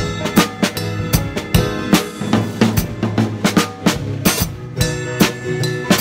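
Acoustic drum kit played with sticks in a steady groove, sharp snare and bass drum strokes with cymbal hits several times a second, over a backing track.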